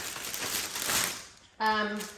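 Thin clear plastic wrapping crinkling as hands pull and smooth it, dying away after about a second and a half.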